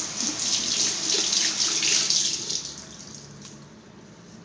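Water running from a bathroom tap for about two and a half seconds, then stopping.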